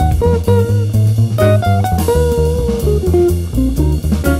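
Jazz guitar playing a single-note improvised solo line, accompanied by bass and drum kit, in a live small-group jazz performance.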